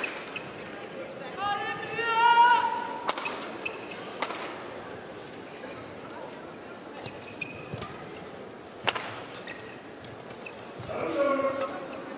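Badminton court sounds: a few sharp racket strikes on a shuttlecock, the loudest about nine seconds in, and high squeaks of players' shoes on the court mat.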